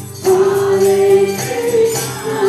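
Kirtan chanting: voices singing a long held note that comes in strongly about a quarter second in and steps up in pitch near the end, over jingling hand percussion.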